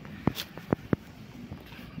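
A few sharp clicks and knocks from a tight jar lid being twisted and worked open, hard to open.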